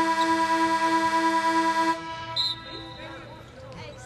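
Basketball arena horn sounding one long steady blast that cuts off about two seconds in. Quieter arena sound with faint voices follows.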